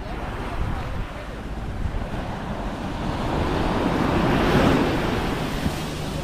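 Surf washing onto a sandy beach, with wind on the microphone. The wash swells to its loudest about four to five seconds in, then eases.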